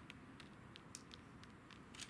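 Near silence, with a handful of faint, sharp clicks at irregular moments.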